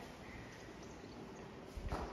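Quiet indoor room tone: a faint steady hiss with a short low bump near the end.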